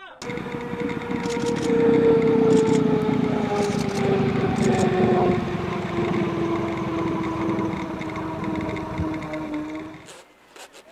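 A racing motorcycle running at speed: a loud, steady tone over a rushing noise, its pitch falling slowly all the while, cut off suddenly near the end.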